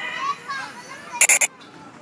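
Children playing and calling out, with a quick run of three loud, high-pitched squeals a little after a second in.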